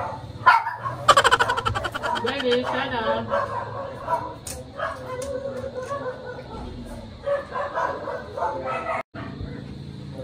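A dog whining and yipping over people talking, most insistent for a couple of seconds near the start.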